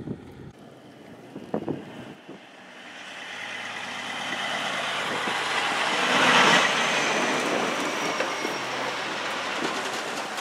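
Semi truck pulling a long aluminum livestock trailer drives past on a gravel road. Its engine and tyre noise build as it approaches, loudest about six and a half seconds in, then ease off a little.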